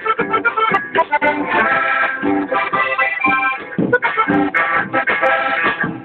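A band playing music live: a melody over a regular low beat, with no break.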